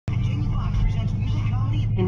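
Steady low drone of a car's engine and tyres heard from inside the cabin at about 37 mph on a wet road, with a voice talking faintly over it.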